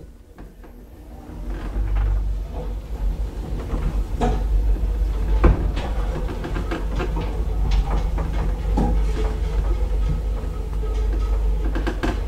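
Traction elevator car setting off and travelling: a low rumble rises about a second in and runs on steadily, with scattered clicks and rattles from the car.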